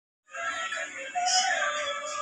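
Pop song with a sung melody, playing through a television's speaker and picked up in the room; it starts about a quarter second in.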